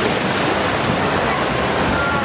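Steady rushing and splashing of water from the waterfalls and spray along a log flume ride channel.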